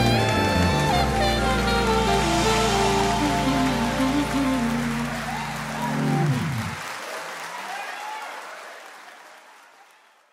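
The final bars of a jazzy gospel song: the band plays on, then its low notes slide down in pitch and stop about seven seconds in. A hiss-like wash is left and fades out to silence by the end.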